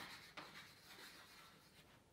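Chalk writing on a blackboard, faint: a short tap about half a second in, then light scratching strokes that fade.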